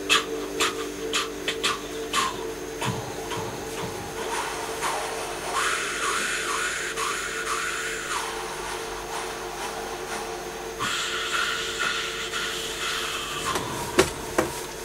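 Electric guitar played through wah-wah and octave effect pedals. A few picked notes fade over a steady sustained drone, then come hissy, wavering swept tones twice.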